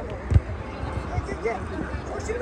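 Spectators talking and calling out, with a single low thud of the football being struck about a third of a second in.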